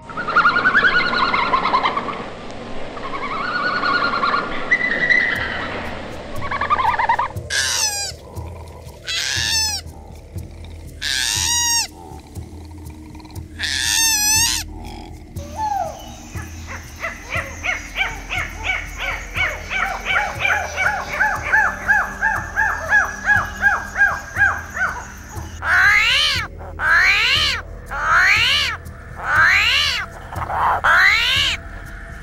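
A run of animal calls of several kinds. First a jumble of chirps, then four loud arching cries about two seconds apart. Next comes a fast run of short calls that rises and fades out, and near the end loud, sharp rising cries about once a second.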